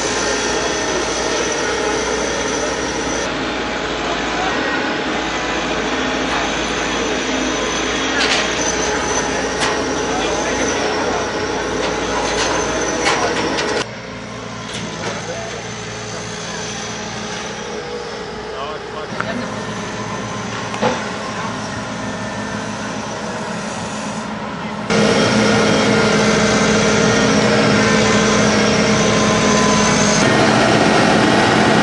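Wheeled excavator diesel engines running, with people talking in the background. The sound drops abruptly about halfway through and becomes louder near the end.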